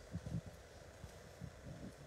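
Faint, irregular low thumps of footsteps walking toward and up a wooden staircase, over a soft steady hiss.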